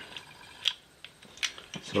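A few light, sharp clicks from a Labinal aircraft toggle switch being handled, its lever flipped back and forth to find which way is on and which is off.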